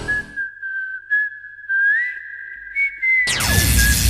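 A whistled tune holding one high, pure note that steps up about halfway through, over an almost silent background. A little after three seconds a loud, noisy whoosh with a falling sweep cuts in and runs to the end.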